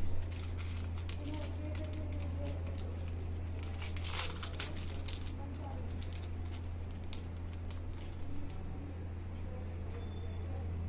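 Crinkling and crackling of a disposable syringe's sterile wrapper being torn open and handled by gloved hands, busiest about four seconds in, over a steady low hum.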